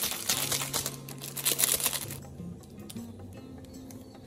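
Plastic instant-noodle packet crinkling and crackling as it is handled, dense and loudest in the first two seconds, then fading. Background music with a low bass line runs underneath.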